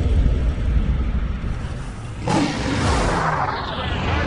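Sound-effect transition: a deep rumble, then a sudden rushing whoosh a little past two seconds in that fades away.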